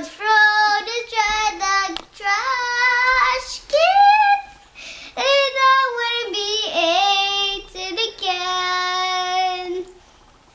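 A young child singing in a high voice, her notes gliding and held, ending in one long steady note that stops just before the end.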